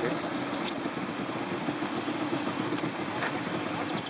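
A small boat's engine running at a steady drone under way, with the rush of water and wind around the hull.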